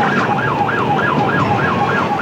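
Police car siren in rapid yelp mode, sweeping up and down about three times a second over steady road and engine noise, picked up by the patrol car's own dashboard camera.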